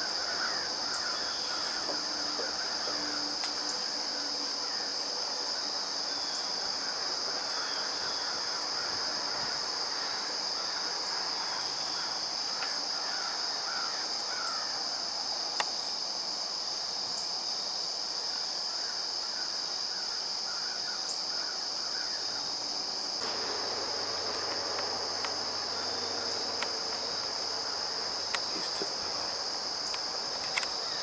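Dusk insect chorus of crickets: a steady, unbroken high-pitched drone. Over the first half, short calls from birds are heard, with a few faint ticks here and there.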